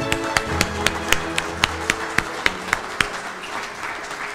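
Soft instrumental music with a few people clapping over it, sharp evenly spaced claps about four a second.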